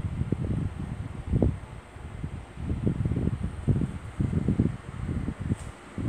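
Irregular low rumbling and bumping from a handheld camera being moved and handled.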